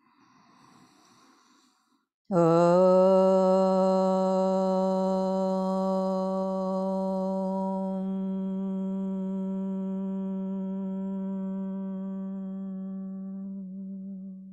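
A woman's voice chanting one long, steady "Om" at a single low pitch. It starts about two seconds in, is held for about twelve seconds and fades slowly. The brighter open vowel closes into a hummed "mmm" in the second half.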